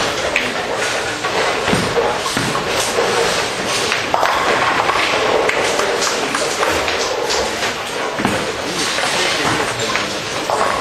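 Bowling alley din: balls thudding and pins clattering on many lanes, with frequent sharp knocks over a steady hubbub of voices in a large hall.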